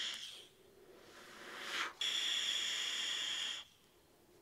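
Airflow hissing through a Wotofo Flow sub-ohm vape tank as it is drawn on, with a faint whistle. The first draw tails off about half a second in, a short breath rises just before second two, and a second steady draw follows and stops shortly before the end.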